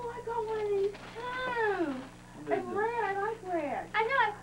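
A cat meowing repeatedly: four or five long, drawn-out meows that arch and waver in pitch.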